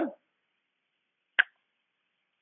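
A single short click about one and a half seconds in, from a computer mouse button, with near silence around it.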